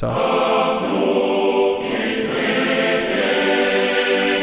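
Sampled male choir from EastWest Hollywood Choirs, played from a keyboard through Wordbuilder, singing the syllables of 'beginning' as one sustained chord. The vowel shifts about halfway through. The 'g' of 'ginning' has been shortened so it sounds less harsh.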